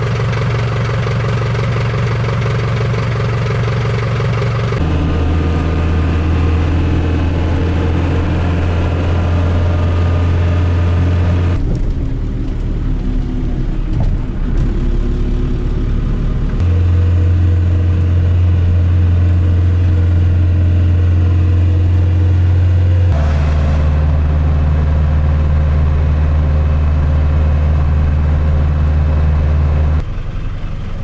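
Iveco minibus engine running with a steady low drone. The pitch and level jump abruptly several times.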